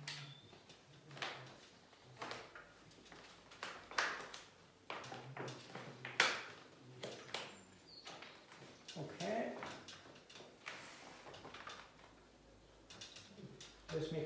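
Paper wallpaper rustling and scraping as hands press and smooth a strip onto the wall, in a string of short, irregular strokes.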